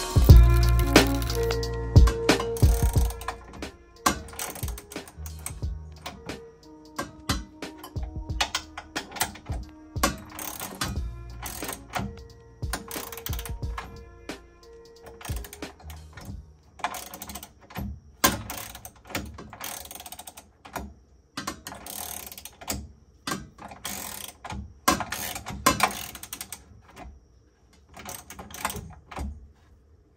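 Hand ratchet wrench clicking in quick runs of strokes as a bolt is driven, the clicks coming in bursts mostly in the second half. Background music with sustained notes plays through the first half, and a heavy low thump comes at the very start.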